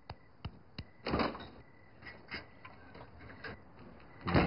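Light, regular ticks, about three a second, in a quiet room, with one louder, short, soft noise about a second in.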